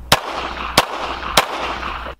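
Beretta pistol fired three times, the shots about two thirds of a second apart.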